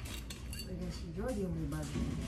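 Light clicks and clinks of a screw cap being twisted off a glass wine bottle by hand, in the first part. Then a person's voice with a rising and falling pitch, like a drawn-out murmur.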